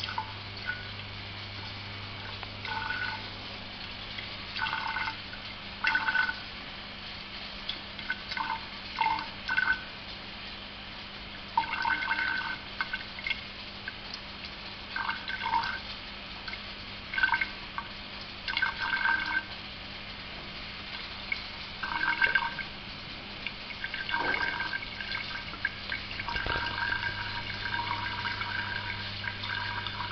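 Alcohol distillate from a reflux still trickling and dripping into a glass graduated cylinder, at about one millilitre a second, in short irregular splashes. A low steady hum runs underneath.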